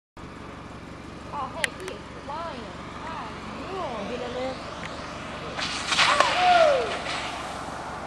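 Onlookers' voices calling out several times over a steady low hum, then a louder burst of rushing noise with a long falling shout about six seconds in, as the downhill skateboarder goes down.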